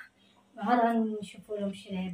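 A woman talking, in short phrases broken by brief pauses; no other sound stands out.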